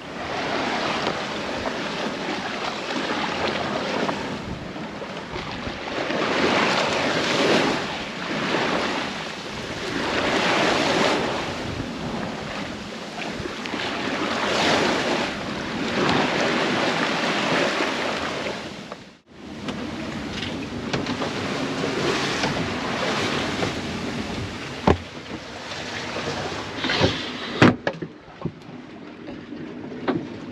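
Water rushing and hissing along the hull of an Alberg 30 sailboat under sail, surging and easing every few seconds as the bow wave breaks over the swells, with wind on the microphone. The sound drops out briefly about two-thirds of the way through, and a few sharp knocks come near the end.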